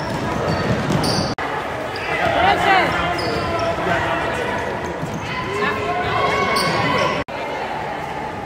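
Basketball game in a gym: the ball bouncing on the hardwood and sneakers squeaking, with spectators' voices echoing through the hall. The sound cuts out for an instant twice.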